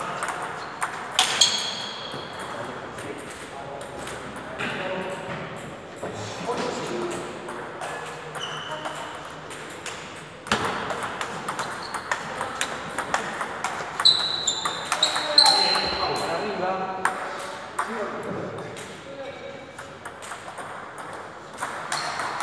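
Table tennis rallies: the ball clicking sharply off the paddles and the table in quick back-and-forth exchanges, with a few short high squeaks among the hits.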